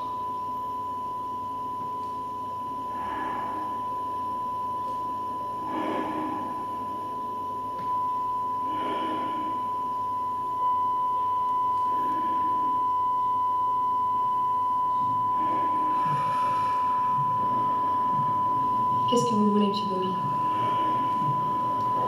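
A steady, high-pitched electronic tone, like one long held beep, sounds without a break. Soft sounds come and go under it about every three seconds, and a brief voice is heard near the end.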